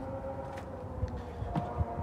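Steady background hum with a faint held tone over a low rumble, and a few soft ticks.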